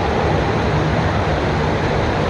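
Water pouring steadily from a water-play structure into a shallow pool, a continuous even rush with no sudden splash.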